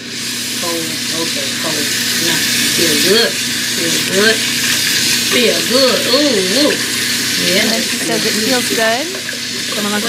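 Tap water running into a sink during hand-washing, played back over a hall's loudspeakers, with a voice sweeping up and down in pitch over it.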